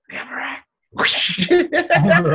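Laughter: a short laugh, a brief pause, then from about a second in a longer, breathy burst of laughing that breaks into short pitched bursts.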